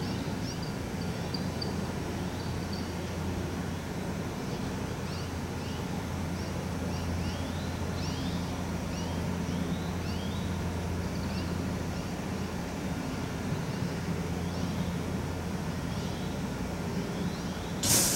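Series 383 electric train standing at the platform, giving off a steady low hum. Small birds chirp repeatedly over it in short rising calls.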